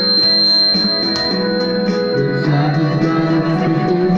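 Karaoke backing music playing through a small speaker, with held instrumental notes over a steady beat. A high, thin steady tone sounds over the first two seconds.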